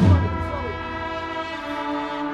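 Processional brass band of cornets, trumpets and trombones holding a long sustained chord, opened by a heavy drum stroke, after which the steady drum beat stops.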